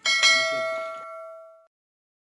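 Bell-notification ding of a subscribe-button animation: one bright chime that starts suddenly and fades out within about a second and a half.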